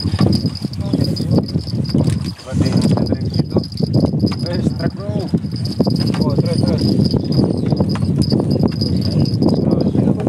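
Crickets or similar night insects trilling as one steady high-pitched tone, under loud low rumbling noise and indistinct voices.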